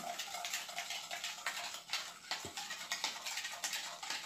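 A metal spoon clinking and scraping against a glass, stirring a fizzing mixture of lemon juice, baking soda and water, with sharp ticks several times a second.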